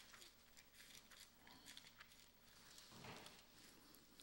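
Near silence, with faint scattered ticks and rustles of Bible pages being turned by hand.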